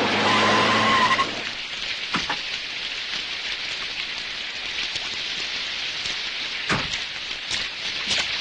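Heavy rain pouring steadily, with a few scattered knocks and one sharp thump near the end. A held note of background music cuts off about a second in.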